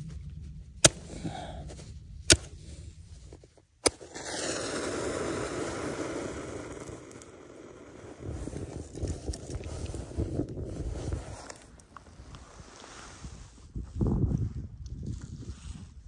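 Campfire being lit in the snow: three sharp clicks about a second and a half apart, then about four seconds of steady rushing noise, followed by softer irregular rustling and crackling.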